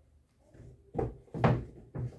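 Used shoes being set down on a table, making dull thumps about a second in and again, louder, about a second and a half in, with another at the end.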